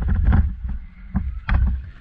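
Wind buffeting a helmet-mounted camera's microphone, a low uneven rumble that swells and dips, with a couple of short knocks about a second and a half in.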